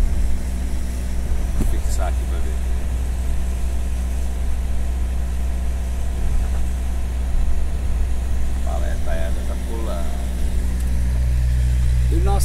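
Steady low engine drone heard from inside a truck cab, with a slightly higher hum joining in about a second before the end.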